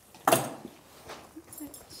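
A horse's bridle being slid over its head: one short breathy blow about a quarter second in, then faint metallic jingling of the bit and buckles.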